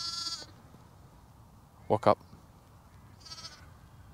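Sheep bleating twice: a louder, wavering bleat at the very start and a fainter one about three seconds in.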